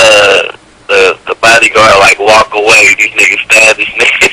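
Men's voices talking and laughing, broken by a short pause about half a second in.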